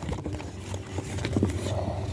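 Soft rustling and light knocks of a paperback book being handled close to the microphone, over a steady low hum.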